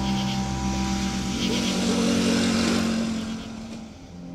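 A motor vehicle passes, its noise swelling and then fading away near the end, over a steady ambient music drone.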